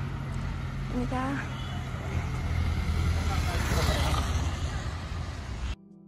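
Street noise with a vehicle engine running close by: a steady low rumble. A short voice is heard about a second in. It all cuts off sharply near the end.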